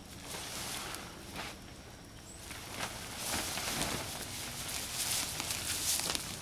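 Nylon fabric of a Gazelle T4 pop-up hub tent rustling and swishing as its wall is pulled out by hand, louder from about halfway through, with footsteps on dry leaf litter.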